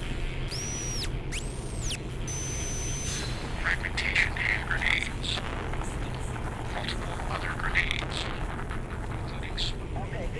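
Steady low drone of a car's engine and road noise heard from inside the cabin. A few high whistling glides and a short high steady tone come near the start, and short squeaky sounds follow around the middle and near the end.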